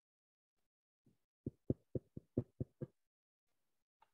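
A quick run of about eight soft, low taps, roughly four a second, lasting under two seconds and starting about a second in.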